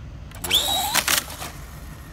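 Traxxas short-course RC truck accelerating hard from a standstill. Its motor whine rises sharply and holds high for about half a second, mixed with a rush of tyre noise on asphalt, then drops away as the truck speeds off.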